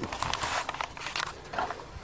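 Faint handling noise from a handheld camera being moved about: scattered small clicks and rustles.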